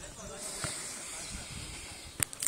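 A steady hiss that sets in about half a second in, with faint voices under it.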